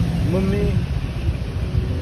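A short vocal sound from a voice about half a second in, over a steady low rumble.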